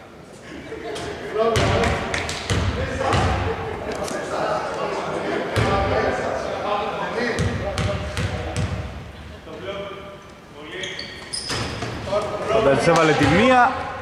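A basketball bounced on a hardwood court by a player at the free-throw line, in repeated short impacts, with voices over it.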